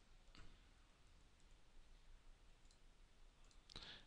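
Near silence: room tone with a few faint computer mouse clicks, one about a third of a second in and a couple near the end.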